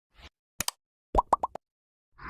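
Animated like-button sound effects: a quick double mouse click, then three short rising pops in quick succession.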